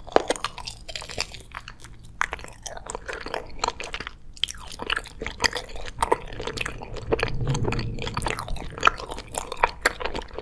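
Close-miked biting and chewing of an earth gummy with a red jelly centre: a bite right at the start, then steady chewing full of small sharp clicks and smacks.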